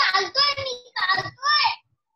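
A child's high-pitched, sing-song voice in about four short bursts. It comes through a participant's unmuted microphone on an online call.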